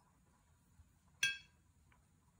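A single short, ringing clink about a second in, as a flat paintbrush knocks against a ceramic mixing plate while watercolour paint is stirred in it.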